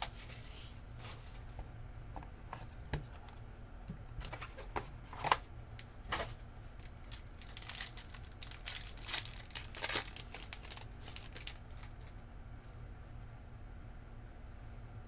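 Plastic wrapping on trading-card packs being torn open and crinkled by hand: a run of sharp, irregular crackles that thins out near the end.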